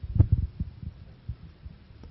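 Microphone handling noise: a quick run of dull low thumps in the first second, then a few fainter ones.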